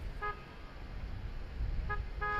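Short car-horn toots in street traffic: one about a quarter second in and a double toot near the end, over a low traffic rumble.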